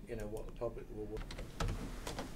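Indistinct talk in a room, then a few sharp clicks from about a second in.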